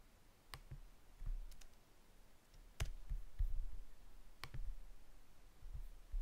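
Three sharp clicks of a computer mouse, spaced irregularly, with a few fainter clicks and soft low bumps between them.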